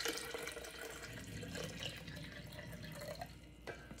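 Water pouring in a thin stream from a stainless steel pot into a plastic pitcher, a steady trickle that fades and stops near the end.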